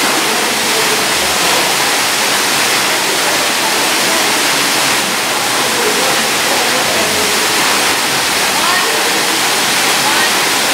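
Waterfall pouring down into a rock gorge: a loud, steady rush of falling water.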